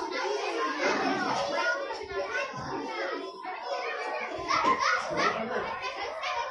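A room full of young children chattering and calling out over one another, many voices overlapping in a continuous babble.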